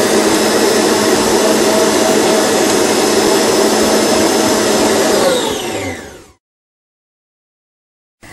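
Stand mixer's motor driving a biscuit-press attachment, running steadily as dough is pushed out through the die. It winds down, its pitch falling, and stops about six seconds in.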